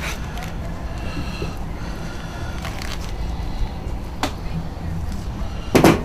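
Indistinct background voices over a steady low rumble, with a sharp double click near the end.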